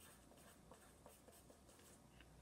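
Faint scratching of a pen writing on lined paper, in short irregular strokes.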